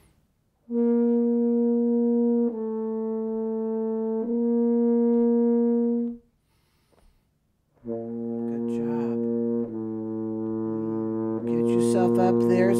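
Double French horn playing long held notes: three joined notes, a pause of about a second and a half, then another three held notes pitched lower.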